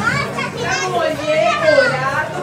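High-pitched, excited voices calling out and talking, with no clear words.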